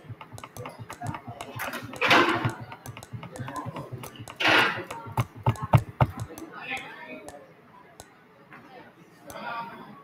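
Rapid ticking of an online spinner wheel as it spins, the clicks coming quickly at first and spacing out as the wheel slows, dying away about eight seconds in. A person's voice sounds briefly about two seconds in and again at four and a half seconds.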